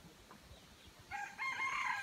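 A rooster crowing: one long call that starts about a second in and is still going at the end.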